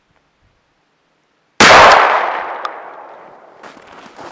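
A shotgun fired once, a sharp report that rolls away over about a second and a half. Near the end come footsteps crunching in snow.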